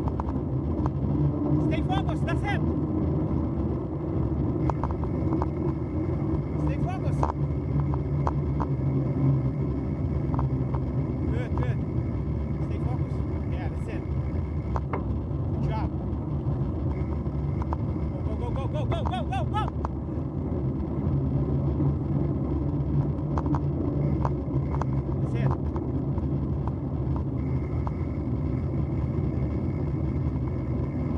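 Wind buffeting the microphone and bicycle tyres rolling over a packed-gravel road while riding, a steady low rumble, with a few brief higher-pitched sounds about two, seven and nineteen seconds in.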